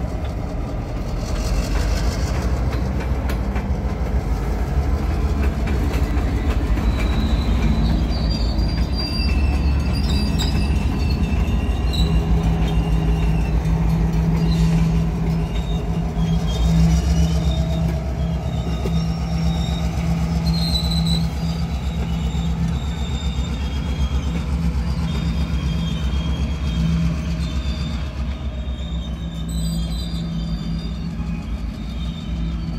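Lancaster & Chester diesel locomotive running with a steady low drone as it pulls a few covered hopper cars slowly along the track. Thin, high-pitched squeals from the steel wheels on the rails come and go.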